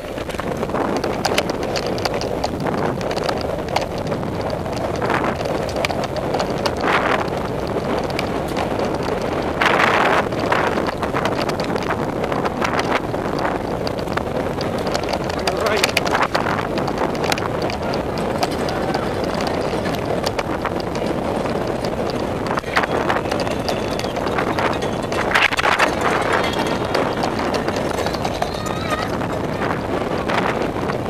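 Mountain bike ridden fast over a dirt singletrack, heard from a camera mounted on the bike or rider: constant rattling of the frame and chain with many sharp clicks and knocks from rocks and roots, over tyre noise on dirt and wind on the microphone.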